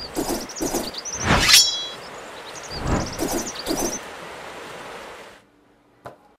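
Outdoor ambience with birds chirping in short repeated calls, and two sharp swishes, the louder one about a second and a half in with a brief ringing. It all cuts off shortly before the end.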